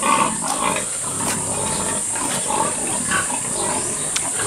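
Pigs grunting, in short scattered calls, with a steady high hiss underneath.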